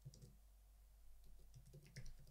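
Faint computer keyboard typing: a few soft, scattered keystrokes.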